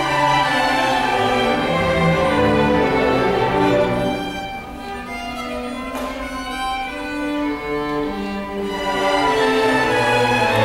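String orchestra of violins, cellos and basses playing a Baroque concerto grosso live. The full ensemble plays loudly, drops softer for a few seconds in the middle, then swells back up near the end.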